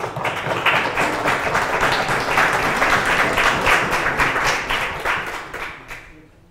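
A small audience applauding after a talk ends, a dense patter of many hands that tapers off near the end.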